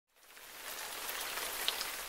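Steady rain falling on trees and grass, fading in over the first half second and then holding an even hiss.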